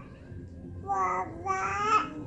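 Infant babbling: two drawn-out, high-pitched vowel sounds, one about a second in and a longer one near the end.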